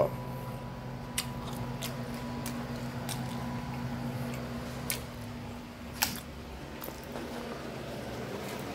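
Handling noise: a few faint, irregular clicks and taps as a plastic ketchup bottle is set down and a plate is handled, the clearest about six seconds in. A steady low hum runs underneath.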